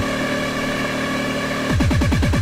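Electronic dance music from a club DJ set: the kick drum drops out, leaving a held synth chord, then a rapid roll of kick drums comes back in near the end.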